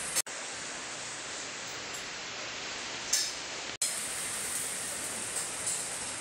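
Steady, even hiss of background noise with nothing else in it, broken twice by a momentary drop-out to silence, about a quarter of a second in and again near two-thirds of the way through.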